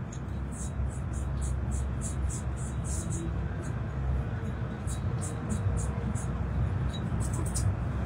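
A Thermomix kitchen machine running a steady low motor hum while it heats and stirs spices in its steel bowl. Quick, irregular scratchy ticks sound on top of the hum.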